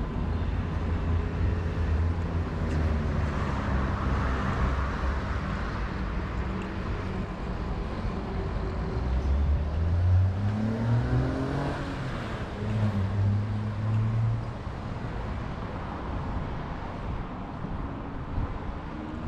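Traffic on a busy city road: engines running and vehicles passing, with one engine rising in pitch as it accelerates about ten seconds in.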